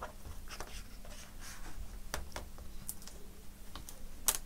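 Hands removing a laptop LCD panel from its lid: irregular light clicks and short scraping sounds as the thin panel is lifted out and fingers work at the bottom edge of the lid.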